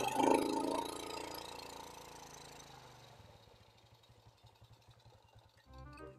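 Music fading out in the first second, then a faint small motorcycle engine idling with an even low putter. Music comes back in near the end.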